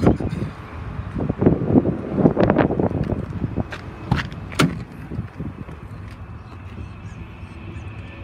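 Footsteps on asphalt with handling noise and a few sharp clicks and knocks, the sharpest about four seconds in. A steady low outdoor rumble runs underneath.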